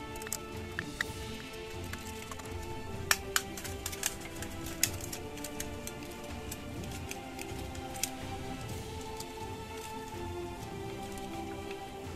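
Orchestral background music with sustained notes, over which the aluminium-can gauntlet's folded metal pieces and brass fasteners give a handful of sharp clicks and taps as they are handled, the loudest about three and five seconds in.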